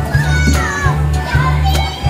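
Children's high-pitched voices and calls over loud background music with a steady bass line.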